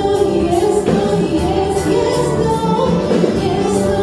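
A gospel song sung into a microphone over instrumental accompaniment with a regular beat.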